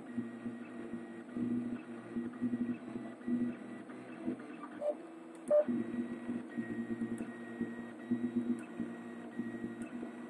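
Prusa 3D printer's stepper motors whining in shifting tones as the print head moves back and forth laying down infill, with a brief lull and a short sharper note a little past halfway.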